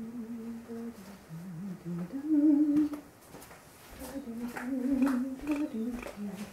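A person humming a slow, wordless tune, holding notes for up to a second or so, with a short pause in the middle; the loudest note comes a little past two seconds in.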